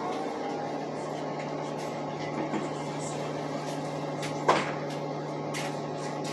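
Steady hum inside a city bus cabin as the bus idles at a stop, with a single sharp knock about four and a half seconds in.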